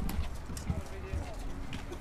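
Faint voices talking in the background, over a steady low rumble, with a few soft knocks.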